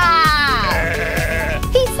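A sheep bleating once, one long call that falls in pitch and then holds steady for about a second and a half, over background music with a steady beat.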